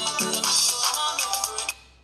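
Yamaha electronic keyboard playing a bright chordal passage over bass notes. The playing stops abruptly shortly before the end.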